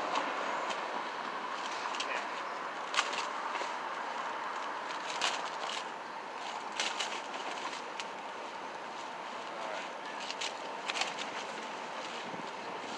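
Plastic tarp and tent fabric rustling, with a few sharp crinkles, as the tarp is pressed and smoothed onto the tent floor by hand. A steady background noise runs underneath.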